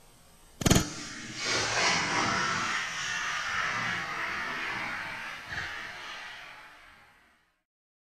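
A single sharp, very loud crack of a .30-06 rifle bullet arriving about two-thirds of a second in, followed a moment later by the rifle's report and its long echo, which swells and then slowly fades out.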